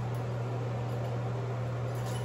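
Steady low hum with an even hiss behind it: room tone, with no distinct events.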